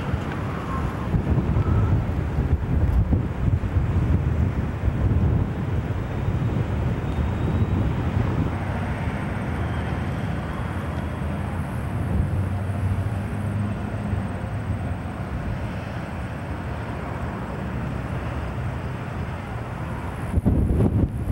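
EMD SD45 diesel locomotive's 20-cylinder two-stroke engine idling with a steady low rumble, with wind buffeting the microphone.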